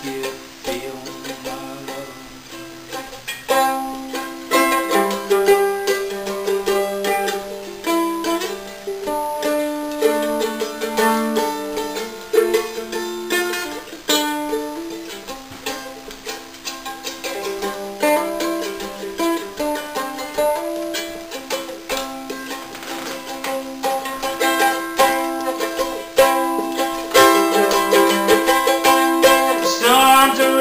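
Mandolin played solo, picking a melody and chords in an instrumental break without singing.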